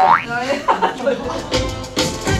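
A cartoonish rising boing sound effect, followed by brief voices. Background music with a beat comes in after about a second.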